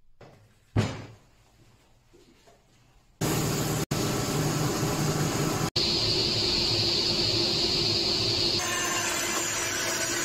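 A single sharp knock on the workbench about a second in. Then, from about three seconds in, a woodworking machine's motor starts running loudly and steadily, broken by a few brief cut-outs.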